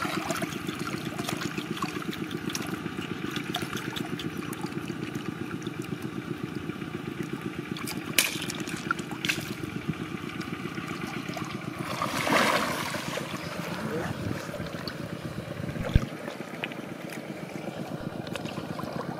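Shallow river water sloshing and splashing around a wader's arms and hands as he searches the bottom for mussels, with a louder splash about twelve seconds in and a few sharp clicks and a knock. Underneath runs a steady, low, rapidly pulsing motor-like drone.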